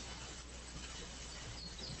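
Faint steady background hiss with a low hum, the open-microphone noise of an online video call, with no distinct event.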